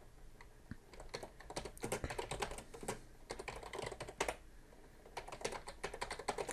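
Typing on a computer keyboard: a run of quick key clicks, a short pause a little after four seconds, then a few more keystrokes.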